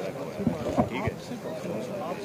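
Indistinct men's voices talking close by, with a few low thumps on the microphone between about half a second and a second in.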